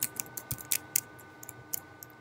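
Computer keyboard keys clicking in a quick, uneven series of about a dozen short taps.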